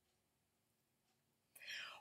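Near silence: room tone, with a short, faint breath drawn in near the end.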